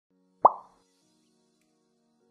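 A single short upward-sweeping pop sound effect about half a second in, fading out quickly, followed by faint held tones of soft background music.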